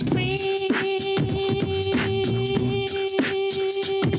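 Beatboxing into a microphone: one voice holds a long steady note while laying drum sounds over it, sharp snare-like clicks about twice a second over low kick thuds.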